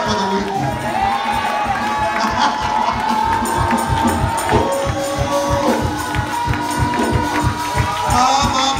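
Gospel praise-break music with a fast, steady drum beat and long held notes, with a congregation cheering and shouting over it.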